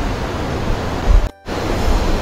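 Wind buffeting a handheld camera's microphone: a steady rushing hiss with a heavy low rumble. It cuts out suddenly for a split second about one and a half seconds in.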